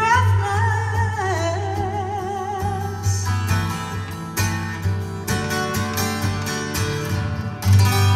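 A woman's voice holds one long sung note with vibrato over a strummed acoustic guitar for about the first three seconds. After that the acoustic guitar goes on strumming alone.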